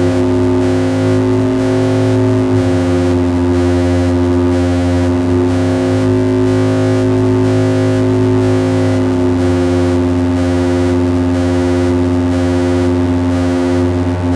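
Drone from a homemade eurorack 'exquisite corpse' synth module in the style of the Grendel Drone Commander: a dense, steady chord of held low tones with a noisy, gritty edge. A faint even pulsing runs through the hiss on top.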